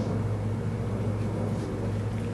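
A steady low hum with faint room noise and no distinct events.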